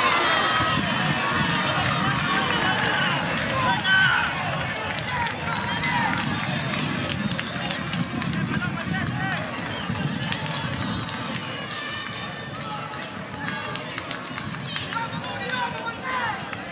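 Several people shouting and calling out across an outdoor football pitch, loudest in the first few seconds with one sharp shout about four seconds in, then gradually quieter.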